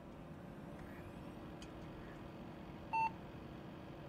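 A single short electronic beep about three seconds in, over a steady low hum.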